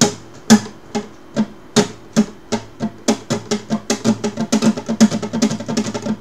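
Nylon-string classical guitar strummed with rasgueado finger strokes in a looping down-down-up-up pattern of middle and index fingers. The strums start at about two a second and speed up steadily into a fast, continuous roll.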